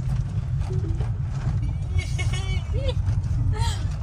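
Camper van driving slowly over a gravel road, heard from inside the cab as a steady low rumble of engine and tyres. Faint voices sound over it.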